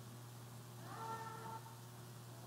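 Low steady hum of room tone, with one faint, short high-pitched call or squeak about a second in, lasting under a second.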